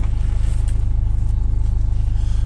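A moving car heard from inside its cabin: a steady low rumble of engine and road noise.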